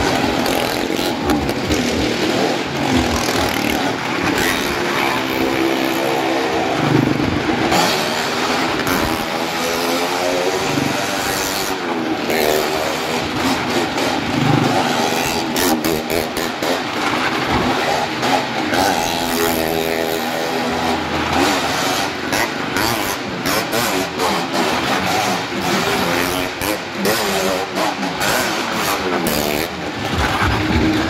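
Small car and motorcycle engines running hard as they circle the wooden wall of a Well of Death drum, their pitch rising and falling over and over, with frequent sharp clicks.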